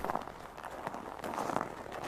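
Faint steady hiss of room tone, with no clear event.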